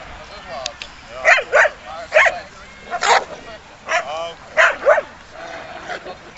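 A dog barking in a run of about seven short, sharp barks, some in quick pairs.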